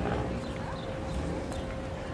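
Busy street noise: a steady low rumble with scattered sharp clicks at uneven spacing and a faint steady hum.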